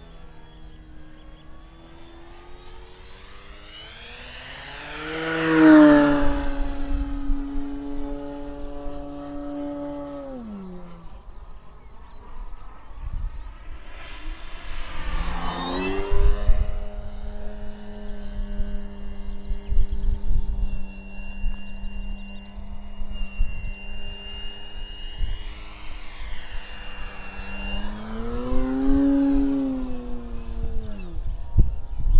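Electric motor and wooden propeller of an Avios Grand Tundra RC plane in flight, a steady whine that swells and drops in pitch as the plane makes three close passes, loudest about six seconds in. The pitch falls off sharply around ten seconds in as the throttle is cut back. In the second half there is gusty low rumble of wind on the microphone.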